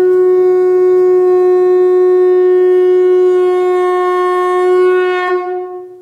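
A single long note blown on a horn-like wind instrument, held loud and steady at one pitch, then fading out near the end.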